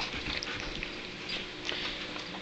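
Two large dogs shuffling about on the floor, with faint scattered ticks of their claws and paws.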